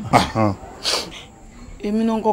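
A woman speaking in a strained, upset voice, broken by a short breathy hiss about a second in, then talking again near the end.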